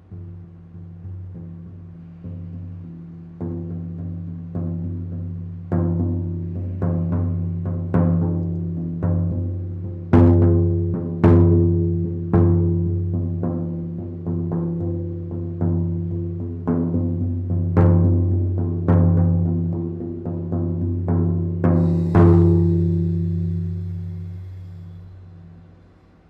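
Large shamanic frame drum struck with a beater in a steady beat of about one stroke a second, each hit a deep boom that rings on into the next. The beat swells louder toward the middle, and a final strike a few seconds before the end is left to ring out.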